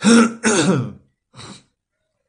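A man clearing his throat: two loud rasps in quick succession, then a shorter, fainter one.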